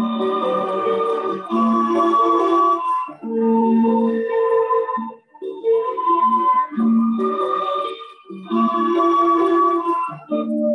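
Instrumental music opening a song: a slow melody of held, sustained notes played in phrases of a second or two, with short breaks between them.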